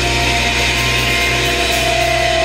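A hardcore band's amplified electric guitars and bass through stage amps, holding a steady ringing drone with no drums.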